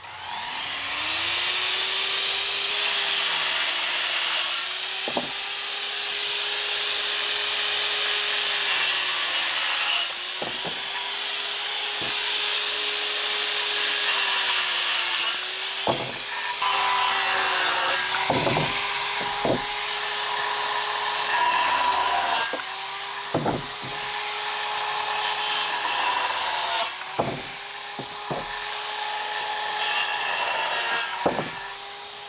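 Handheld electric circular saw running steadily and cutting across lumber boards, its motor pitch sagging briefly several times as the blade bites into the wood. About ten sharp wooden knocks are scattered through.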